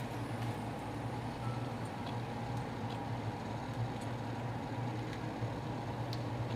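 A steady low mechanical hum, with a few faint clicks and taps.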